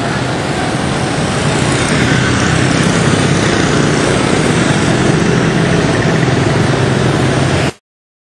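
Dense motorbike and scooter traffic on a city street: many small engines running and passing close by at once, a loud steady din that cuts off abruptly near the end.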